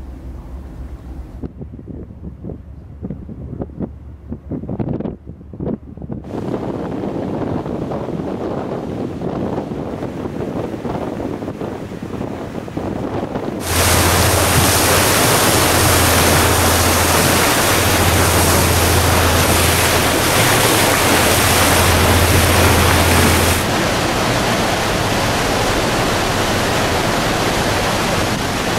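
Steady rush of water as the ferry Coho's bow cuts through the sea and throws up spray, with wind on the microphone. After a quieter stretch with a low hum, it starts suddenly loud about halfway through, then eases slightly over the churning wake near the end.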